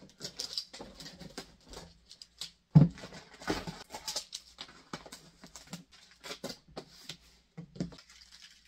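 Cardboard shipping box being handled on a table: scattered taps, rustles and scrapes, with one loud thump just under three seconds in.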